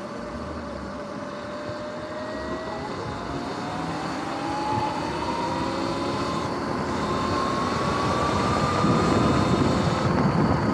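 Sur-Ron X electric dirt bike accelerating: the motor and drivetrain whine rises steadily in pitch, while the rush of wind and road noise grows louder toward the end.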